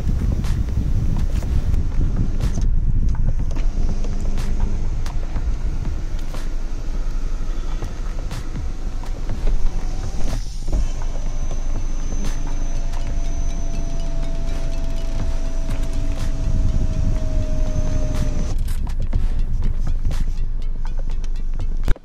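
Steady low road-and-engine rumble inside the cabin of a moving Hyundai Creta. A faint, steady, slightly falling whine sits over it for several seconds in the second half.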